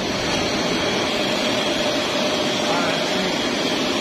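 Poultry processing line machinery running steadily: a continuous mechanical noise with a steady hum.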